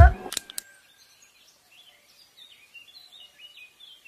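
A lofi hip-hop beat ends on a final hit right at the start, then faint bird chirps follow, short high calls repeating over a quiet background.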